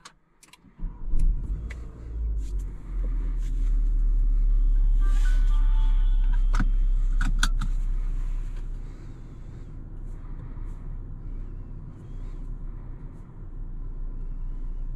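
Renault Arkana's 1.3-litre turbo four-cylinder petrol engine starting about a second in and running at a raised idle that drops to a lower, quieter idle after about eight seconds. A few brief tones and clicks come from the cabin midway.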